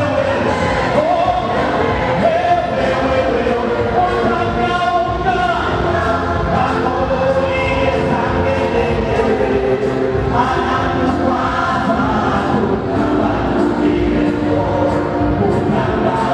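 A group singing a gospel praise song over amplified music, led by a man singing into a handheld microphone. The singing runs loud and steady throughout.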